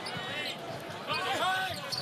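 Court and crowd sound of a live NBA basketball game as heard on a TV broadcast, with a voice heard briefly about a second in.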